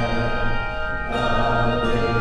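Handbell choir ringing chords of long, overlapping bell tones, with fresh strikes about a second in and again near the end.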